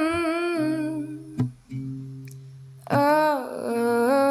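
Female voice humming a wordless melody over acoustic guitar: one held note at the start, then a louder phrase about three seconds in that slides down and settles. Low guitar notes ring on underneath.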